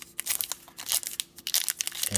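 Crimped plastic wrapper of a Topps baseball card pack crinkling in the hands in irregular bursts, as it is gripped at the sealed top edge to be torn open.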